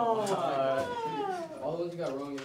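A teenage boy's long, high, whining cry that slides down in pitch, then a shorter cry near the end, as he reacts to eating a sour Warheads candy.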